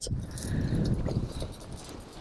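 Wind buffeting the microphone: an uneven low rumble that eases off after about a second, with a few faint rustles and ticks.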